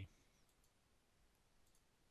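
Near silence: room tone with a faint computer mouse click.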